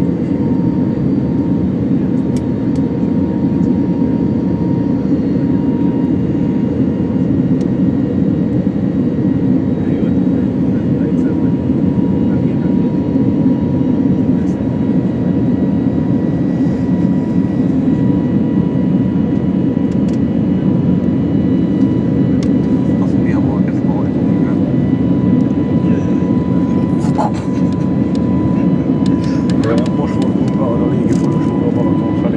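Airbus A321neo's engines and rushing air, heard inside the passenger cabin during the climb after takeoff: a steady low rumble with a thin steady whine above it.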